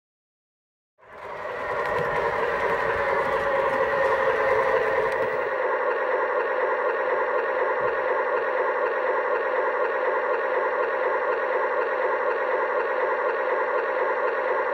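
O-scale model trains running on three-rail track: a steady mechanical hum and whine from motors and wheels, starting about a second in.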